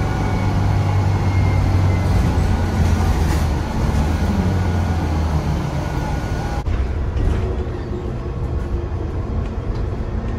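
Inside a city bus under way: low engine and driveline drone with the thin whistle of the Voith DIWA automatic gearbox, its tones drifting slightly down in pitch. About two-thirds of the way in, the sound changes abruptly to another bus running.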